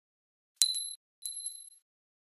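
Two bright, glassy dings, a sound effect for a glass Christmas ornament bouncing. The dings are a little over half a second apart, and each rings briefly. The second is softer than the first.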